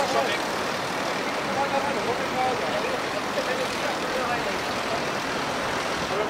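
Steady rushing of a flowing river's current, an even noise with no rise or fall.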